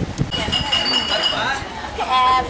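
A clink of tableware that rings on with a clear high tone for about a second, while people talk.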